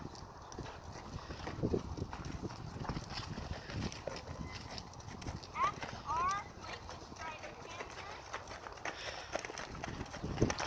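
A horse's hoofbeats on the soft sand footing of a dressage arena, a steady run of muffled strikes as it works around the ring. A few short rising whistle-like calls are heard a little after halfway.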